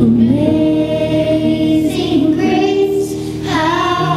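Children's choir singing, holding long notes that glide between pitches, over instrumental accompaniment.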